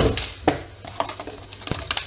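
Paper packaging strips and a box being handled and cleared off a table by hand: a dull thud at the start, then light rustling with a few small clicks and knocks.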